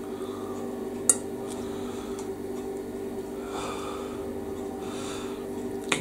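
Metal cutlery clinks once against a plate about a second in, over a steady background hum. Softer noise follows in the second half.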